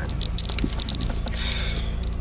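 Steady low hum of the 2012 Honda Accord idling, heard from inside the cabin, with light clicks and a brief rustle of the phone being handled about a second and a half in.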